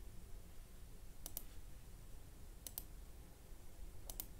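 Computer mouse clicking twice, each a quick press-and-release double click, about a second and a half apart, over a faint low hum.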